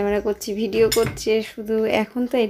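A woman talking, with a few light metallic clinks about a second in.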